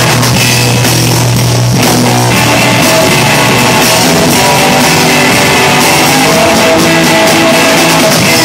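Live rock band playing loud, with amplified electric guitar over a drum kit, in a passage without singing.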